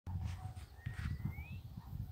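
Wind buffeting a phone microphone in uneven gusts, with a thin whistle rising slowly in pitch about a second in.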